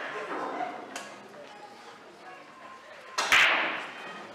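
Pool hall sounds: a sharp click about a second in, then a louder knock with a brief rush of noise a little past three seconds. Faint talk runs underneath.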